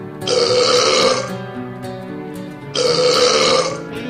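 A man belching loudly twice, each belch lasting about a second, after gulping a canned drink, over background music.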